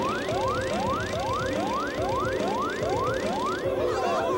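Cartoon cockpit warning alarm: a quick run of rising whoops, about two or three a second, over background music. It signals the low-fuel warning, with the plane almost out of fuel.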